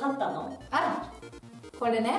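A woman laughing in short bursts, with a background music bed running underneath.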